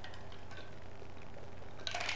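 A man drinking from a cup: faint sips and small clicks over a steady low electrical hum, with a slightly louder click near the end.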